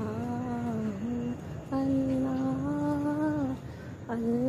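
A single voice humming long, held notes in a slow devotional chant, the same chant that elsewhere repeats "Allah". One note ends about a second and a half in, and a second, slightly rising note is held for nearly two seconds.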